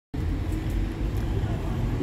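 Steady low rumble of road traffic with faint voices in the background.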